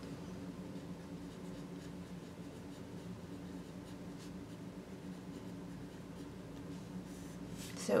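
A pen writing by hand on paper, faint scratching strokes that grow a little stronger near the end, over a steady low hum.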